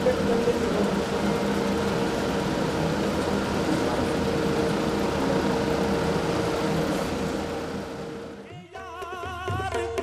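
Steady hubbub of a crowd of men praying together in a small room, with a steady hum under it. It fades out about eight and a half seconds in, and sung devotional music with tabla begins near the end.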